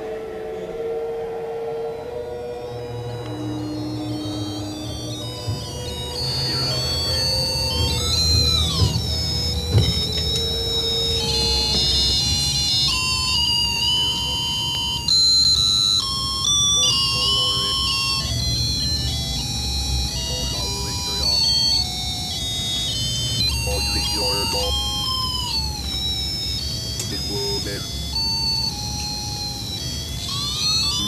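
Electronic tones: steady high pitched tones that switch from note to note every second or so, with several downward siren-like glides, over a low pulsing drone.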